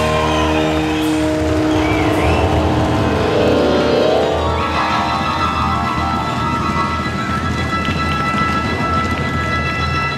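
Live rock band playing, with electric bass under it. Held notes glide in the first half and settle into long sustained tones from about halfway through.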